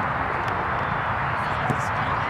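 Open-air soccer-field ambience: wind rumbling on the microphone and faint, distant shouting of players and spectators, with a single sharp thud of a soccer ball being kicked near the end.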